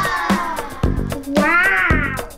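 Background music with a steady beat, carrying two long meow-like gliding tones: one falls in pitch at the start, the other rises and falls in the second half.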